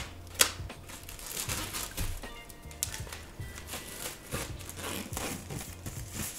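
Clear plastic wrapping crinkling as it is pulled open and off a hardcover book, with irregular crackles and a few sharp handling clicks. Faint background music runs underneath.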